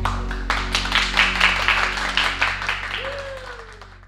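A small group clapping and applauding, about four claps a second, over the fading last chord of an acoustic guitar song. A voice calls out once near the end, and it all fades out.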